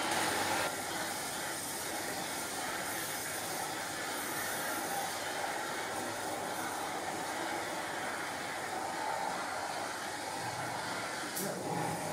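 Steady hissing rush of wort running through the lauter tun's outlet pipework and needle valve during run-off to the kettle, with a short click near the end.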